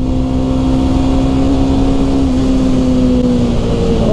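Single-cylinder motorcycle engine pulling at steady revs in fourth gear while riding, over road and wind noise. The engine note eases slightly lower near the end.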